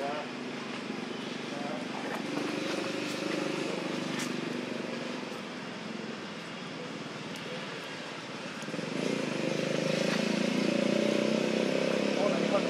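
Outdoor background of indistinct voices with a motor vehicle engine running, probably a motorbike, the engine sound growing louder about nine seconds in.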